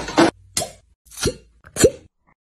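Glass fire-cupping cups pulled off the skin, each breaking its suction with a short hollow pop, three times about half a second apart, after a brief sharp sound at the start.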